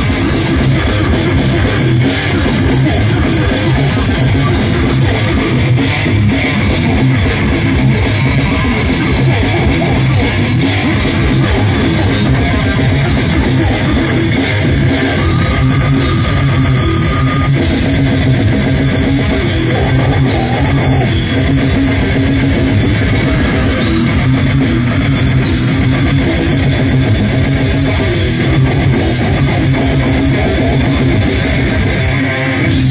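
Slam death metal band playing live: distorted guitar, bass guitar and fast drum kit, loud and dense with no let-up.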